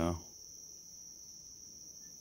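Crickets trilling steadily in the background: a faint, continuous high-pitched trill that does not change.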